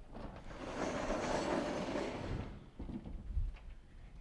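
Vertically sliding chalkboard panels being pushed along their tracks, a rolling rumble lasting about two and a half seconds, then a few softer knocks near the end.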